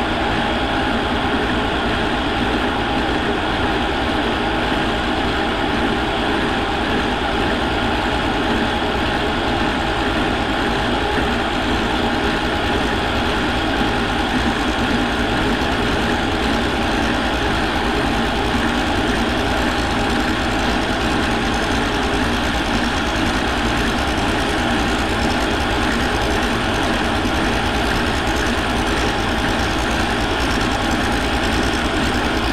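Milling machine running a large fly cutter fitted with a TNMG434 carbide insert, taking a facing cut across a metal plate: a steady, even machining noise of motor, spindle and cutting.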